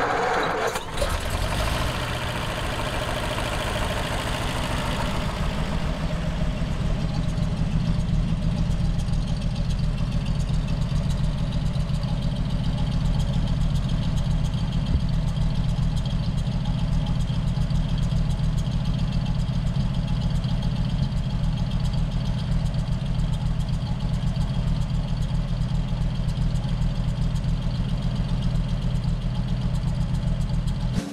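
1934 Packard Eight's straight-eight flathead engine just started, running busier for the first few seconds before settling into a steady idle.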